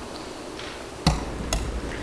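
Handling noise on a handheld microphone: two sharp clicks about half a second apart, the first with a low thump.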